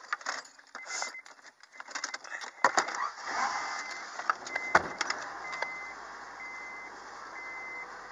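Clicks, knocks and rustling from handling things in an Acura's cabin and glove box, with the car's warning chime beeping about once a second. A sharp knock comes a little after the middle, followed by a low steady hum from the engine idling.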